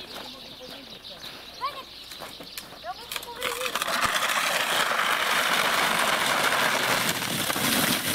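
Faint high children's voices, then from about three and a half seconds in a loud, steady scraping hiss of a plastic sledding pad sliding over icy packed snow.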